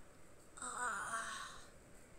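A girl's breathy, voiced sigh, about a second long, falling slightly in pitch and then holding.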